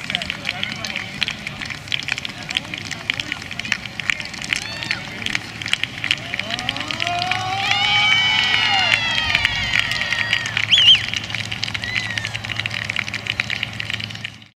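A group of young men yelling together in a long cheer that rises in pitch and then holds, as the team breaks into a run, over a steady crackle of clicks. A short high whoop follows near the end.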